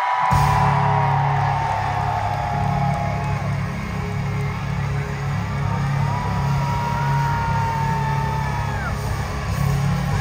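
Live rock band playing loudly, recorded from within the crowd: a sustained heavy low chord with long held high notes over it, and the audience whooping and yelling along.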